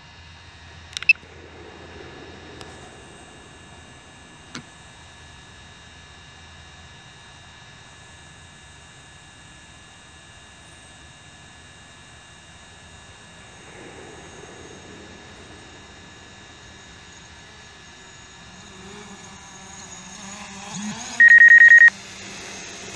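Quiet steady background with a couple of sharp clicks, then near the end a loud, rapidly pulsing high beep from the DJI Go flight app. It sounds as the Mavic Pro drops to within a metre of the ground, a proximity warning from the drone's obstacle-detecting vision sensors.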